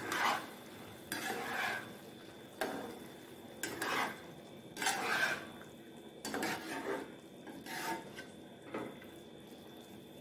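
A spatula stirring mushrooms through thick gravy in a nonstick kadai, scraping and sloshing in strokes about once a second, over a faint steady sizzle from the cooking gravy.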